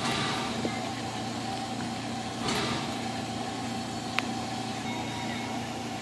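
Replica 4-4-0 steam locomotive standing with steam up: a steady hum with a faint constant whine, a short hiss of steam about two and a half seconds in, and a single sharp click about four seconds in.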